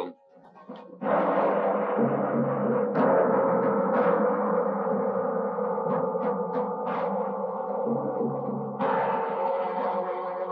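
A dramatic music sting in the film's score. It comes in suddenly and loud about a second in and holds as a steady, ringing sustained sound, growing fuller near the end.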